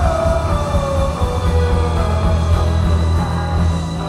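Live rock band playing, with a long held note sliding down in pitch over the first two seconds above a steady, heavy bass.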